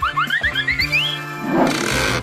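Comedy background music with a cartoon-style sound effect: a quick run of short pitched blips over the first second, each one rising and the run climbing step by step higher, then a swelling whoosh near the end.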